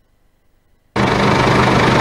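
About a second of near silence, then a steady engine-like running noise with a low hum cuts in abruptly and holds.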